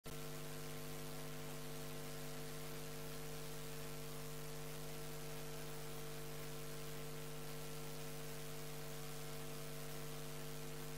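Steady electrical mains hum: a low buzz with a few higher steady tones under an even hiss, unchanging throughout. No hoofbeats or other sounds of the procession come through.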